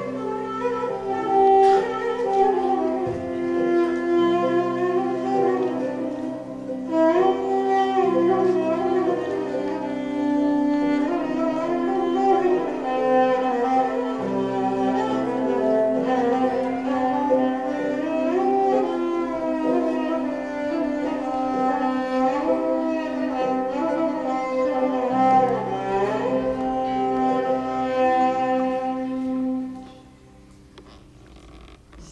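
Instrumental Turkish Sufi ensemble music: an ornamented melody with sliding notes over a steady held drone. It stops just before the end.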